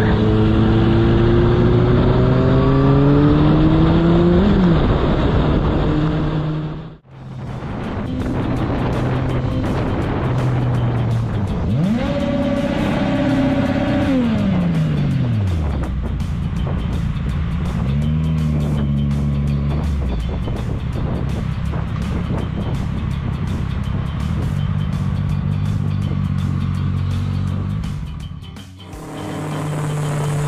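Motorcycle engines heard from the rider's helmet camera with road noise. One rises steadily in pitch as it accelerates over the first few seconds. After a cut, another revs up and back down twice.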